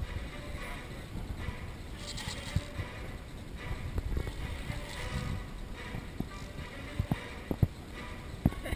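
Background music over a steady low rumble, with a few sharp knocks near the end.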